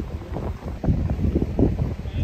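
Wind buffeting the microphone in gusts: a low, uneven rumble that grows stronger about a second in.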